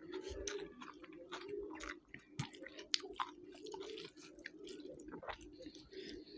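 Close-miked chewing of a mouthful of rice and fish, with many small wet mouth clicks, while fingers mix rice and curry on a plate.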